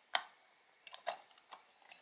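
A sharp click, then a few light ticks, as a plastic-bodied LED bulb is gripped and turned in a desk lamp's socket.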